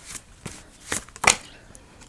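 Tarot cards being handled: a card is drawn from the deck and laid down on the spread, with about four short, crisp card snaps and slides.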